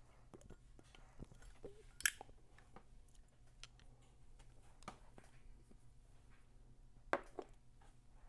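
Faint mouth and lip sounds of a man drawing on a tobacco pipe as he lights it. Two sharp clicks stand out, about two seconds in and about seven seconds in.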